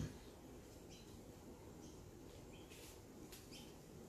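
Near silence with faint, scattered bird chirps and one brief click at the very start.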